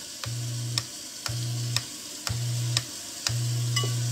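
Garbage disposal hum cutting in and out about once a second, with a click at each start and stop, over a steady hiss: the cleared disposal being run in short bursts.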